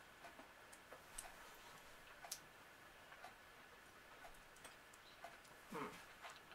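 Near silence with faint, scattered clicks of chewy sour candy being chewed, and a short vocal murmur just before the end.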